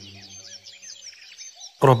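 Faint birdsong: many short, high chirps and twitters. A man's reciting voice comes back in near the end.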